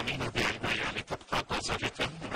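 Plastic wrapping crinkling and rustling in irregular bursts as hands press and wrap a bundle of fresh qat leaves.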